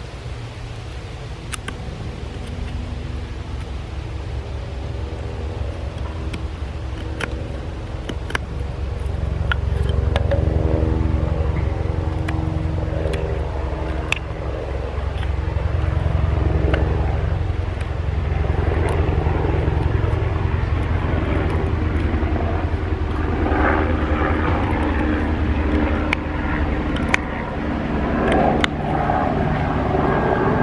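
An engine drones steadily in the background with a humming pitch, growing louder about ten seconds in, and it is the loudest sound throughout. Over it, a TOPS Tanimboca puukko shaves bark and wood from a stick, with scattered sharp clicks and rough scraping strokes.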